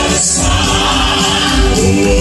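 Male southern gospel quartet singing in close harmony through microphones and the stage sound system.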